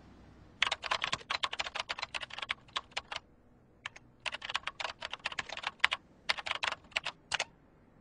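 Fast typing on a computer keyboard: two runs of rapid keystroke clicks separated by a short pause a little past the middle.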